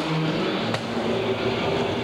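Skateboard urethane wheels rolling on a wooden vert ramp, with a sharp click about three-quarters of a second in.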